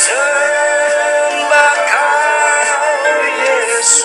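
Worship music: a man sings long, held notes that glide gently in pitch over a steady, sustained accompaniment.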